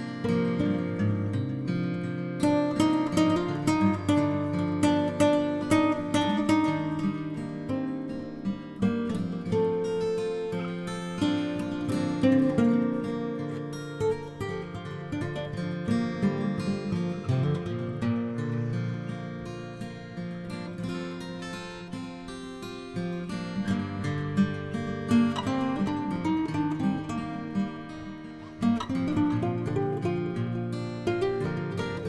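Background music: acoustic guitar, plucked and strummed, with notes picked out in quick runs.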